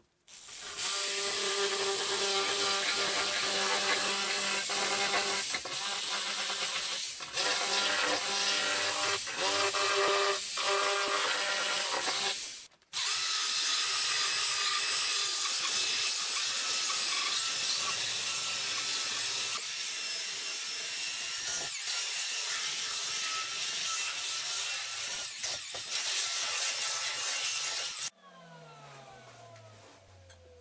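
A corded electric saw with a long straight blade running on wood, with a steady hum, cutting out briefly about 13 s in. After that a power sander runs steadily on the wood. Near the end the motor winds down with a falling pitch.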